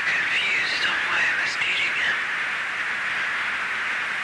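Quick, wavering bird-like chirps and warbles over a steady hiss, as part of an experimental music track.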